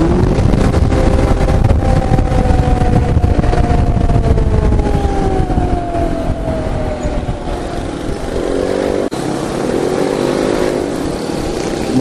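Motorbike riding sound from a Yamaha X-Ride automatic scooter in city traffic: the engine running under wind noise, its note slowly falling as the bike slows and the wind noise easing. About two-thirds of the way in come two brief rise-and-fall engine notes.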